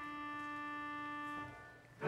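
Church organ holding the last note of a short introduction for about a second and a half, then releasing it so that it dies away.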